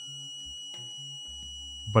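Voltage injection tool giving a steady electronic tone as it feeds low voltage into a motherboard's shorted CPU power rail; the tool's sound follows the current being drawn.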